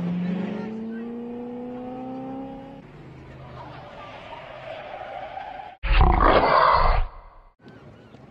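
A car engine accelerating away, its pitch rising slowly over about three seconds and then fading. Near the end a sudden, very loud, harsh burst lasts about a second and cuts off abruptly.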